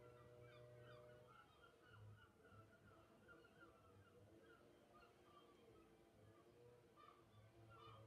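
Near silence: faint room tone with a low steady hum and faint scattered high chirps.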